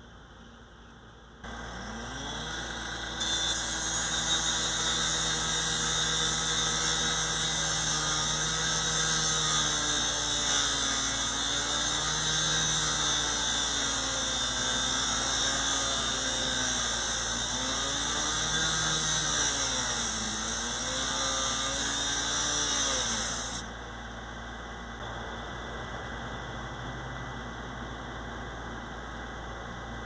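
Power saw cutting through a car's metal body during a vehicle extrication. It starts about a second and a half in, runs with a high, gritty whine for about twenty seconds, its pitch sagging and recovering several times as the blade bites, then cuts off.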